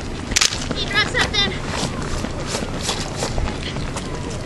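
Runners' footfalls on an asphalt road as they pass close by, after one sharp crack about half a second in and a few brief high-pitched chirpy sounds.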